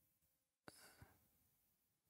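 Near silence, with a faint short exhale about two-thirds of a second in, beginning with a small mouth click.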